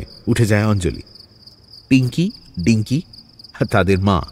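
Crickets chirping in a steady high trill, with short stretches of dialogue over it.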